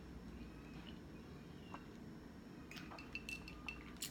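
Ice cubes clinking against a glass mason jar: several light, ringing clinks near the end.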